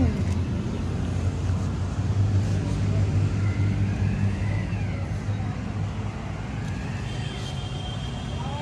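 Steady low electric-motor hum from a belt-driven pressure-washer pump running, easing slightly in level after the middle.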